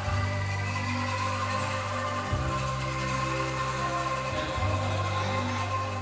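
A large group of children shaking bamboo angklung, playing a tune in a massed tremolo over sustained low notes that change about every two seconds.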